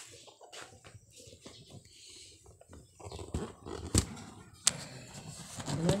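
Handling noise: faint rustling with scattered light clicks and knocks, and two sharper knocks in the second half.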